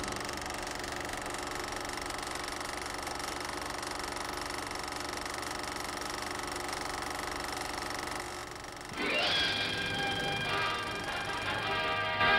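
Steady synthesized sci-fi drone from an opening title sequence: a hum of several held tones. About nine seconds in, a brighter electronic music passage comes in and grows louder.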